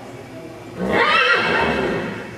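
A horse whinnying once, a loud call of about a second that starts a little before the middle and trails off near the end.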